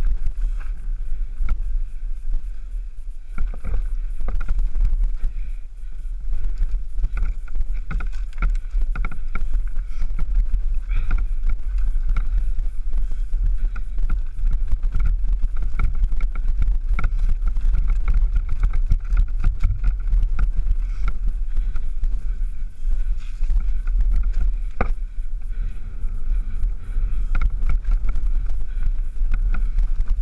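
Mountain bike riding down a rough, stony track, heard through a bike-mounted action camera. Steady wind noise buffets the microphone, and continual irregular rattles and knocks come from the bike and camera mount jolting over the bumps.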